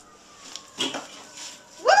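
A woman's high-pitched "woo!" shout near the end, rising then falling in pitch, after a short noise just before a second in.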